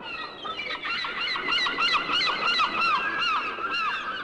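A flock of gulls calling, many short arched cries overlapping several times a second.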